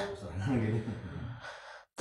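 A short pause in a speaker's talk: the end of a word trailing off, then a soft breath, and a brief cut to dead silence just before speech resumes.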